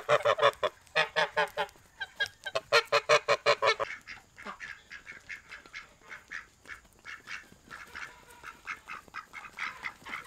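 Domestic geese honking loudly in rapid runs of calls for about four seconds, then ducks quacking more quietly and quickly.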